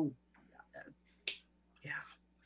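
A single sharp click a little over a second in, set between a sentence trailing off and a short spoken "yeah".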